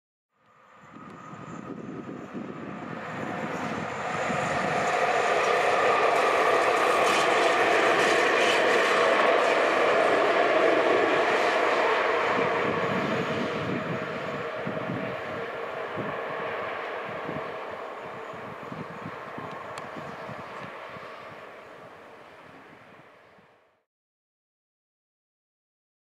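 A coal train hauled by an ET42 twin-section electric locomotive passes, growing louder to a steady, loud run of motor hum and rolling noise. As it moves away, the wheels click rapidly over the rail joints and the sound gradually fades, cutting off just before the end.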